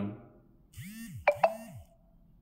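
A short electronic chime sound effect, about a second long: two quick ding-like strikes, close together, over two low rising-and-falling swoops.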